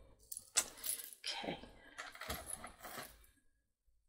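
Beads and costume jewelry clicking and clinking together as a heavy three-strand bead necklace and the pile around it are handled, in a string of short, light rattles.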